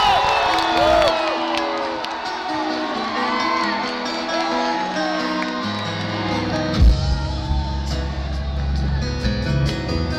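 A live rock band opening a song, with guitar chords and a harmonica over crowd cheering and whoops in the first couple of seconds. Bass comes in about six seconds in, with a loud thump about a second later, and the band plays on.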